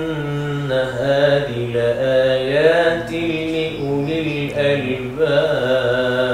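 A man's voice reciting the Quran in melodic tajwid style, in maqam Jiharkah (Ajam), drawing out long, ornamented notes that glide between pitches, with a short break before a new held phrase about five seconds in.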